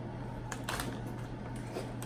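A few faint crinkles and clicks of MRE foil food pouches being handled, over a steady low hum.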